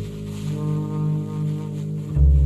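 Live jazz on saxophone and upright double bass, with one long low note held for about two seconds.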